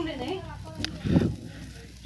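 A man's voice trailing off in a drawn-out, wavering 'uh'. A click follows, then a short, louder low sound just after a second in.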